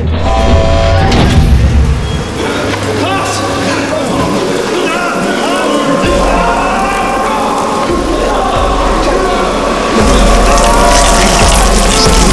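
Tense horror film score with a deep low drone and high tones that rise and fall; it gets suddenly louder about ten seconds in.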